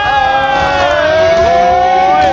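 A ring announcer over the arena PA drawing out the winner's name into one long held note, with a second, lower tone rising slowly beneath it.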